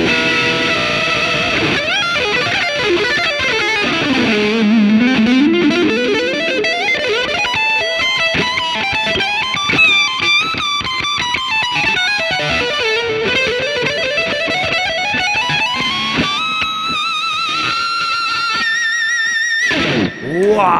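Ibanez JS1BKP electric guitar with its Sustainiac sustainer on, played through a Fender Twin Reverb amp and effects pedals: a lead solo of long sustained notes that slide smoothly down and back up in pitch, ending on a held high note with vibrato.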